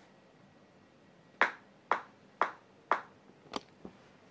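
Four sharp, evenly spaced clicks, about two a second, then two fainter clicks near the end.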